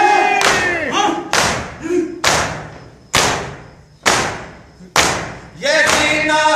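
A group of mourners beating their chests in unison (matam): six heavy open-hand slaps about one a second, each echoing away, between lines of a chanted noha that resumes near the end.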